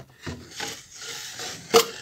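Padded fabric tool case scraping and rubbing against a cardboard box as it is slid out, with scattered rustles and a sharp knock a little before the end.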